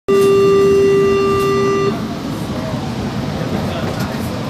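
A loud, steady electronic warning tone on board a São Paulo Metro train, held for about two seconds and then cut off sharply: the kind of signal that sounds as the doors close before departure. Under it and after it, the low rumble of the train's interior.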